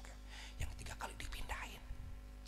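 A man speaking very softly, in a near-whisper into a microphone, in short broken fragments, over a steady low hum.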